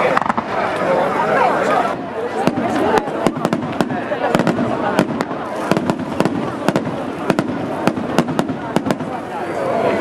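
Fireworks display: after about two seconds, a rapid, irregular run of sharp bangs and crackles from bursting shells, many per second, over a haze of crowd voices.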